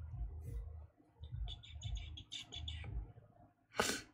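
Knitting needles and yarn being worked by hand: soft handling thuds, a quick run of small, sharp clicks or squeaks in the middle, and one louder sharp click near the end.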